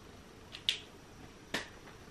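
A few sharp clicks from small objects being handled, the loudest about two-thirds of a second in and another about a second and a half in, over quiet room tone.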